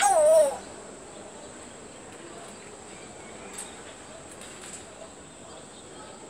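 African grey parrot giving one brief warbling call that wavers and falls in pitch, in about the first half second; after it only a faint steady hiss with a couple of tiny faint noises.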